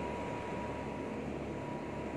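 Steady background machine noise with a thin, constant high whine, like a fan or ventilation running.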